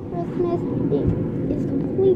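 A boy's voice in short, broken fragments over a steady low rumble.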